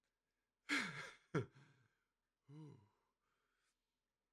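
A man lets out a long, breathy, voiced sigh with falling pitch about a second in, with a sharp second breath right after. A short voiced hum follows near three seconds. It is an emotional sigh from someone moved close to tears.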